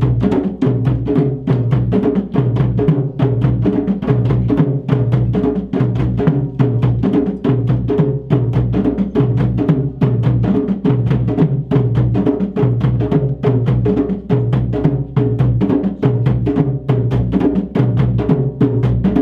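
West African drum ensemble: several rope-tuned djembes played with bare hands, with sticks striking some drums, in a fast, steady, repeating rhythm.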